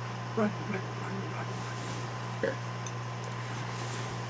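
A man's short muttered words, "right, right", twice, over a steady low hum.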